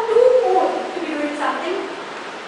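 Only speech: a woman's voice speaking, its pitch rising and falling.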